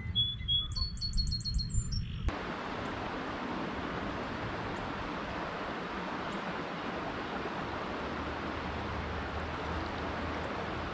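Small birds chirping, with a quick trill of repeated high notes, over a low rumble. About two seconds in this cuts suddenly to a steady rushing noise, the Delaware River running high at flood stage.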